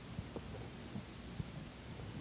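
Faint handling noise: a few soft, low thumps and knocks, four or so spread across two seconds, over a steady low hum.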